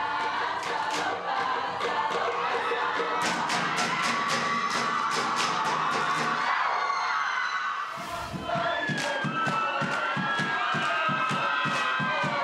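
Samoan group performance: many voices singing and shouting together, with sharp unison hand claps at about four a second in the middle. After a break about two-thirds in, the singing continues over a steady low beat at about three a second.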